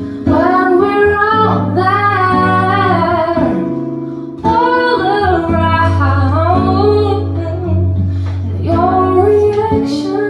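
A singer's voice, amplified through a microphone, carries a melody in long sung phrases over fingerpicked acoustic guitar. There is a short breath gap about four seconds in.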